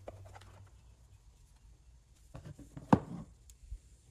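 The plastic engine cover of a Ryobi two-stroke string trimmer is worked loose and lifted off its engine, making faint scattered clicks and knocks of plastic. The sharpest click comes about three seconds in.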